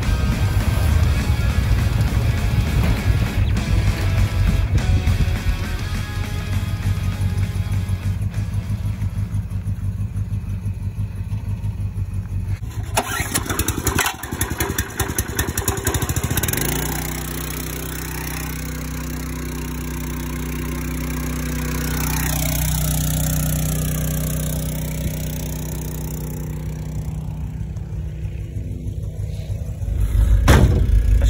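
Ford XB Falcon ute's engine running as it is driven, a rough low rumble. A little past halfway a small petrol engine on a water pump runs at a steady even note.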